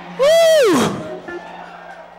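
A woman's single loud shouted cry into a microphone, rising and then falling in pitch and lasting under a second, over a low steady hum from the sound system.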